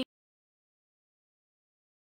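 Silence: the sound track goes completely blank as the song cuts off at the very start.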